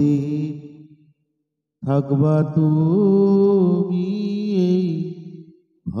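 A man singing a Bengali Islamic gojol unaccompanied. A held note dies away in the first second, then after a short silence comes one long, slow phrase with the pitch wavering through ornaments.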